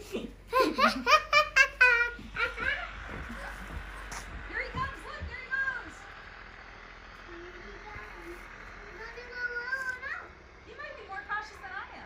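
A woman and a small child laughing together in the first couple of seconds, then softer voices for the rest.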